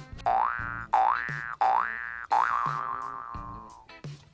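Cartoon-style comedy sound effect: three quick rising 'boing' glides, then a fourth that rises and fades slowly with a gently falling pitch.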